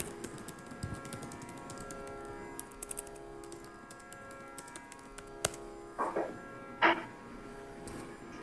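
A faint, steady drone of several held tones, with scattered light clicks and two short, louder noises near the end.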